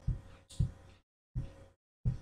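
Three soft, low thumps: one at the start, one about half a second in and one near 1.4 s, with dead silence between them.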